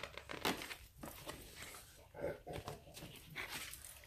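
Paper and plastic packaging rustling and crinkling in short, scattered bursts as small items are handled.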